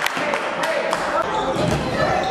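A basketball bouncing on a hardwood gym floor, a series of short sharp knocks, with indistinct voices shouting in the background.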